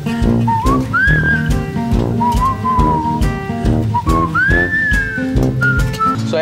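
Background music: an upbeat track with a steady beat and bass under a whistled melody that glides up and down.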